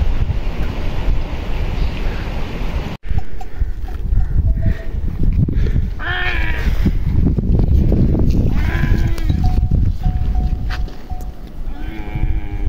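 Wind rumbling on the microphone. After a cut, livestock on a hillside call out in drawn-out bleating calls about a second long, one past the middle, another a few seconds later and a third at the very end, over continuing wind noise.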